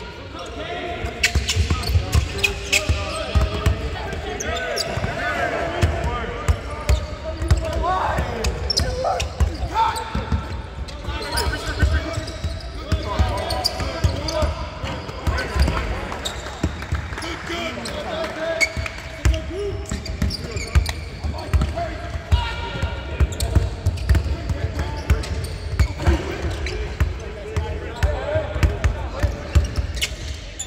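Several basketballs bouncing on a hardwood court, with frequent, irregular dribbles and thuds as players dribble, pass and shoot. It sounds like a large, largely empty arena, with indistinct voices mixed in.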